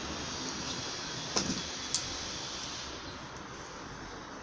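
Microfibre cloth wiping over a car's painted door panel: a steady rubbing hiss, with two sharp clicks about a second and a half and two seconds in.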